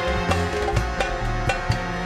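Instrumental band music: drums and percussion strike a quick beat over a plucked electric bass line and held pitched notes.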